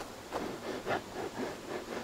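Faint rustling and soft scuffing of footsteps through dry autumn leaves and brush, a few light scuffs spread through the pause.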